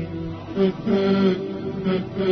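Music with long held notes that step from one pitch to another, playing under a news-segment title card.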